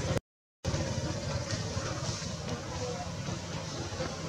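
Steady low background rumble of outdoor ambient noise, broken by a brief gap of total silence just after the start.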